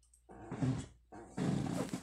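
A woman's voice making two harsh, breathy, growling sounds rather than words, the second longer and louder.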